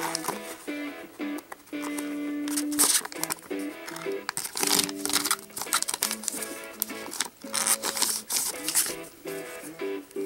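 Background music playing over the crinkling and tearing of a shiny plastic sticker pack being ripped open by hand, with many short crackles as the wrapper is handled.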